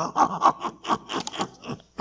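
A man laughing: a run of short breathy bursts, about five a second.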